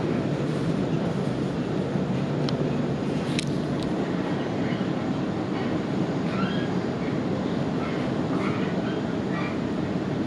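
Sydney Trains double-deck electric train running at speed, heard from inside the carriage: a steady rumble of wheels on track and car body, with a few light clicks a few seconds in.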